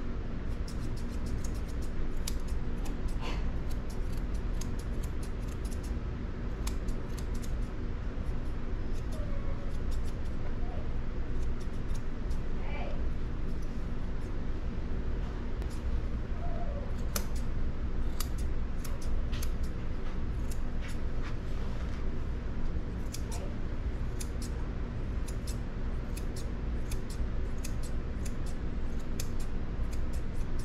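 Straight grooming shears snipping the hair on a dog's leg and paw: quick, irregular crisp snips, over a steady low hum.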